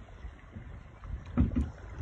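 Wind buffeting the microphone in uneven low rumbling gusts, strongest about a second and a half in.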